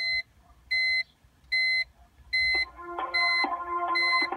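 Short electronic beeps from a BMW E46's built-in telematics phone, evenly repeated about once every 0.8 seconds, during a call to a carrier's automated phone-activation line. About two and a half seconds in, a steadier sequence of tones from the line joins the beeps, changing pitch in steps.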